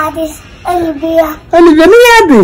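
A child's voice in long, drawn-out sung calls, about three in a row: the last swoops up near the end and then falls away.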